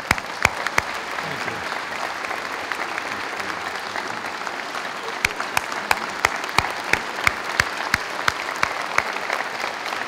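Audience applauding steadily. Sharp claps from one person close to the microphone stand out above the crowd, about three a second from about five seconds in.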